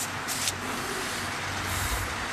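Steady background hiss with a low hum underneath and a short crackle about half a second in.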